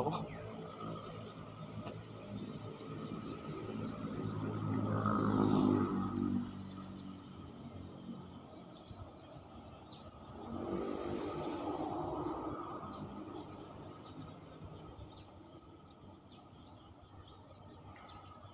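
Motor vehicles crossing the concrete bridge overhead: one builds to a peak about five seconds in and fades, and a second passes about eleven seconds in.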